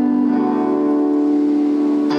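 Electronic keyboard accompaniment of a slow song, holding one steady chord, with new notes coming in sharply right at the end.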